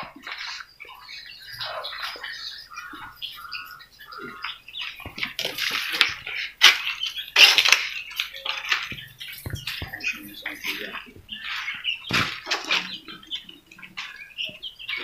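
Scattered short bird-like chirps and calls, with a few sharp clicks and knocks in between.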